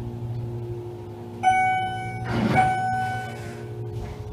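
Schindler MT 300A hydraulic elevator's arrival chime ringing twice, about a second apart, each ring dying away slowly, over the steady low hum of the car in travel. A brief rush of noise sounds between the two rings.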